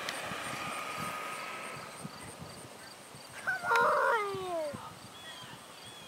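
Electric motor whine of a Traxxas Summit RC monster truck, fading over the first two seconds as the truck drives away. About halfway through, a high-pitched cry that falls in pitch, the loudest sound.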